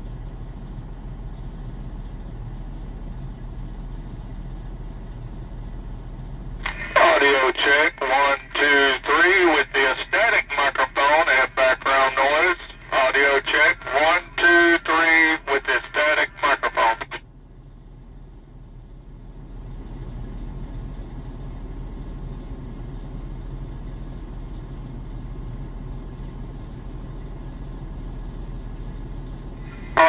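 Steady vehicle-cabin hum, then from about seven seconds in roughly ten seconds of a man's voice received over a CB radio's external speaker, thin and band-limited, a microphone audio-check transmission. The voice cuts off and the hum returns.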